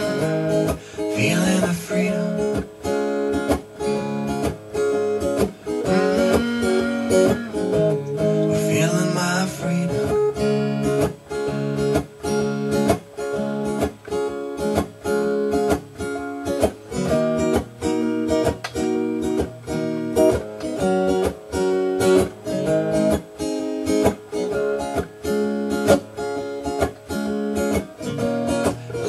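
Tom Anderson Crowdster acoustic-electric guitar strummed in a steady rhythm, about three strokes a second, amplified through a Bose L1 PA system, in an instrumental passage of a bluesy song.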